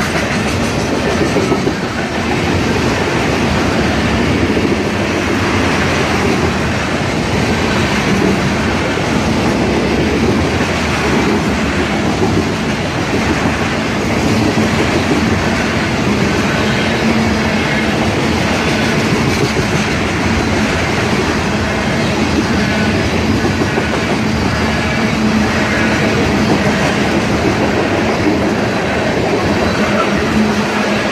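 Freight train of loaded tank cars rolling past close by: a loud, steady rumble and clatter of steel wheels on the rails.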